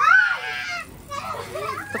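A child's shrill squeal that rises and then falls, the loudest sound here, followed by softer voices.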